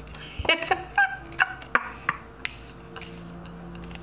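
A woman laughing in several short bursts through the first two seconds, then a few faint clicks of tarot cards being handled and laid down.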